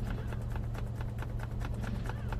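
Steady low hum inside a car cabin, overlaid by a rapid, irregular run of light clicks.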